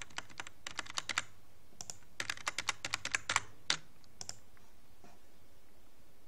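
Computer keyboard keystrokes in two quick runs, typing a password and then typing it again to confirm it.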